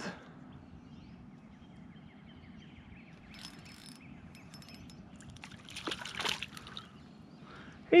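Light water splashing from a small hooked sunfish being pulled up to the surface beside a kayak, loudest about six seconds in, over a quiet lake background.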